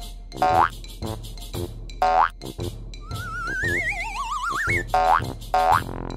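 Cartoon boing sound effects over children's background music: three short rising boings, and in the middle a longer warbling tone that climbs in pitch.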